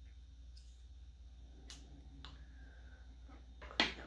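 A few scattered soft clicks and taps from handling a small cosmetic product's packaging, with a sharper, louder click near the end.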